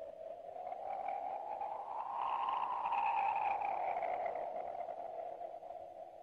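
A long, electronic-sounding tone that slowly rises in pitch and loudness, peaks about halfway, then sinks and fades away.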